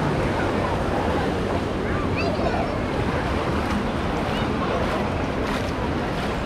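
Surf washing up the shore in a steady rush, mixed with the chatter and scattered calls of a large beach crowd.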